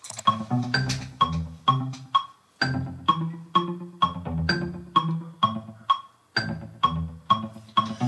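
Synth pluck line from a progressive house track playing alone, short plucked notes in a steady rhythm, with the DAW metronome clicking along. The pluck sits in time with the metronome's beat.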